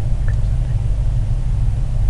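Steady low electrical hum, the background noise of the narrator's microphone recording, with no speech over it.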